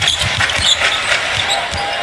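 Basketball dribbled on a hardwood court, a run of short low thuds, over steady arena crowd noise.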